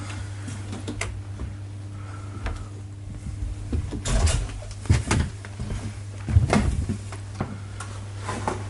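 Footsteps and knocks on the old timber deck boards of a wooden ship's narrow corridor: a few short thuds about one, four, five and six and a half seconds in, over a steady low hum.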